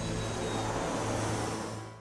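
Background music bed: a sustained low drone under a hissing, rushing wash, fading out near the end.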